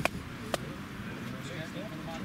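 Faint voices murmuring, with two sharp claps or knocks about half a second apart near the start.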